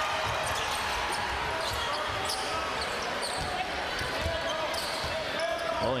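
A basketball being dribbled on a hardwood court, repeated low thuds, under a steady murmur of arena crowd noise.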